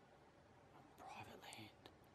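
A man whispering a short phrase about a second in, otherwise near silence.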